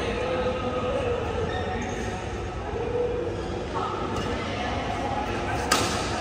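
Indoor sports-hall ambience: people talking in the background over a steady low hum, with one sharp smack near the end.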